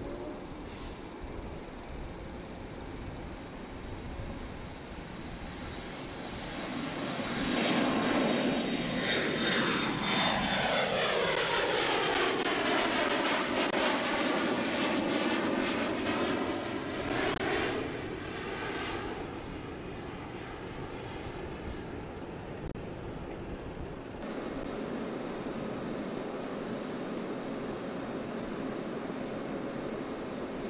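Twin-engine jet airliner climbing out and passing overhead: turbofan engine noise swells about seven seconds in, peaks with a high whine and a sweeping rise and fall in tone, and fades by about eighteen seconds, leaving steady distant jet noise.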